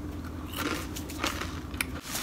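A person biting into and chewing a crunchy chip with the mouth, a few faint crunches spread across the moment.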